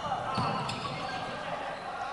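Ambience of a futsal game in a large sports hall: a steady hubbub with faint voices and a couple of light knocks of the ball on the wooden court in the first second.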